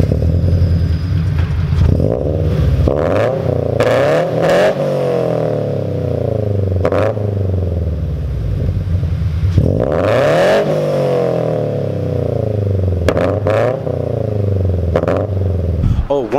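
Subaru BRZ's flat-four engine, fitted with Tomei headers and an Invidia N1 exhaust, running and being revved through the exhaust in a concrete parking garage. Pitch rises and falls with each rev: bigger revs about three seconds in and again about ten seconds in, and shorter blips near the end.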